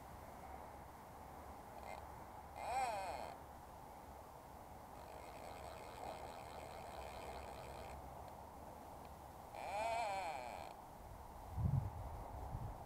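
Two short animal bleats with a wavering pitch, one about three seconds in and a slightly longer one near ten seconds, over a steady low background rush.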